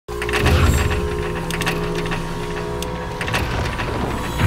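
Logo intro sound effects: mechanical whirring and ratcheting clicks over a low rumble and steady held tones.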